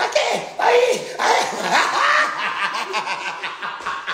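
A man laughing, with short bursts of laughter and wordless voice.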